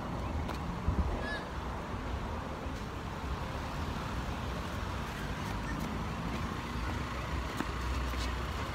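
Wind rumbling on the microphone over a steady outdoor hum of traffic.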